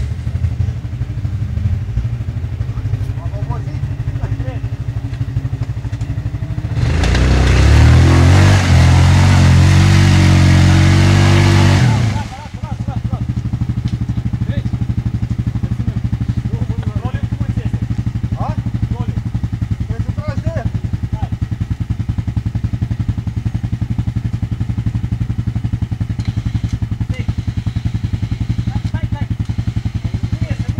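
ATV engine idling while the quad sits bogged in deep mud. About seven seconds in, it is revved hard for about five seconds. The revving cuts off suddenly and the engine drops back to a steady idle.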